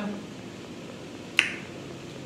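A single sharp mouth click about one and a half seconds in, over steady room noise.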